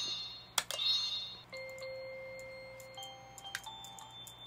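Electronic chime notes from a Bararara Fairies toy magic wand's speaker in its performance mode, each movement of the wand playing the next note of a preset melody. A few single notes at different pitches, the longest ringing for about two seconds in the middle, with a couple of handling clicks near the start.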